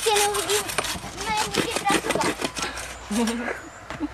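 Bow saw cutting through a birch log in quick strokes that stop about three seconds in, with voices talking over the sawing.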